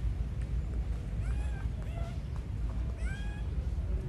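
Macaque giving three short, high, meow-like cries, each rising at the start, about a second apart, over a steady low rumble.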